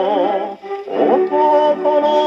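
A 1956 Japanese popular song playing from a 78 rpm record on a Paragon No. 90 cabinet phonograph: a man's sung line with vibrato over the accompaniment, with a dull sound that has little top end. The music dips briefly about half a second in, then a new phrase begins.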